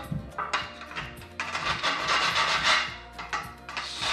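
A hand file rasping across the cut edge of an aluminium extrusion profile in a few strokes, deburring the edge smooth.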